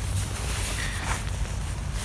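Fabric rustling and handling of a waterproof handlebar mitt (pogie) as its strap is undone and it is slid off the bicycle handlebar, over a steady outdoor background noise.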